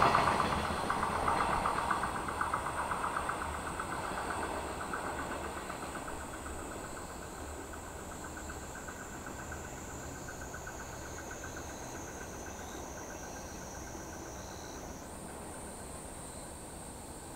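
Container freight train's wheels clattering on the rails, dying away over the first several seconds as the train recedes. A steady high insect buzz remains once it has faded.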